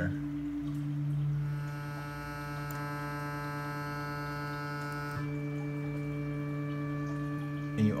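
WaveEdit software playing a steady low drone from a PPG wavetable while the morph position is swept through the waveforms. The timbre shifts as it goes: the tone turns brighter and buzzier about a second and a half in, then changes to a thinner, mellower sound about five seconds in.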